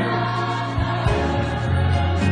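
Choir singing over instrumental accompaniment with a prominent, moving bass line.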